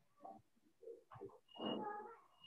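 Faint, short bird calls, several spaced out, the loudest near the end.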